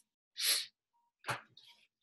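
Breath noises from a person: a short breathy hiss, then a brief sharp puff of breath a little over a second in.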